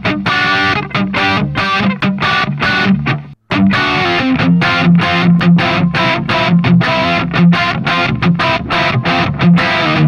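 Electric guitar on its humbucker pickup played through the Brainworx RockRack amp-simulator plugin on its Modern Rock preset: driven, distorted rhythm chords in a quick chugging pattern. The sound stops dead between strokes and cuts out completely for a moment about three and a half seconds in, the plugin's noise gate closing.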